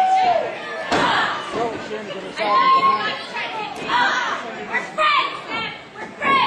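Spectators shouting and calling out at a live wrestling match, several voices overlapping, with a single thud about a second in.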